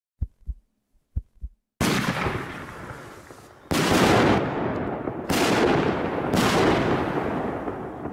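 Two pairs of short low thumps, then four aerial firework shells bursting, about two seconds in and then roughly every one and a half seconds, each a sudden bang trailing off over a second or more.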